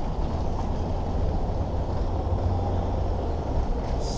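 Steady low rumble of road traffic, with no single event standing out.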